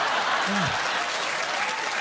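Studio audience applauding, with a short voice sound about half a second in.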